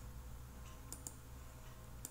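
A few faint computer mouse clicks about a second in, over a low steady hum.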